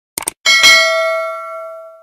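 A quick double mouse click, then a bright bell ding that rings on in several clear tones and fades away over about a second and a half: the click-and-ding sound effect of a YouTube notification bell being pressed.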